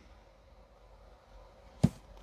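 Quiet room tone, then near the end a single sharp knock as a small glass jar of enamel paint is set down on the bench.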